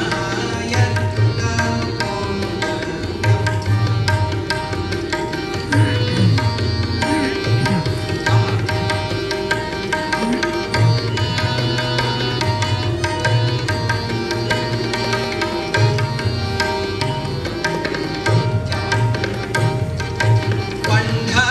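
Harmonium and tabla playing an instrumental passage: held harmonium notes over a steady run of tabla strokes.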